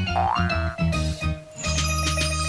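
A cartoon boing sound effect, a quick rising glide, as the ball bounces, over children's background music with a steady bass.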